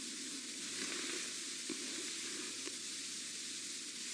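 Faint, steady background hiss with no distinct event.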